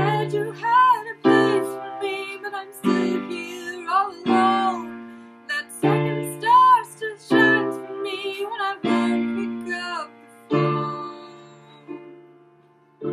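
A solo voice singing over piano chords. The chords are struck about every one and a half seconds and ring down between strikes, while the sung melody glides above them.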